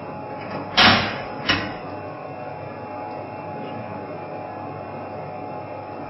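A handheld smart key knocking against the lock cylinder of an interlock locking device on a metal switchgear panel: two sharp clacks about a second in, the first the louder. A steady room hum continues underneath.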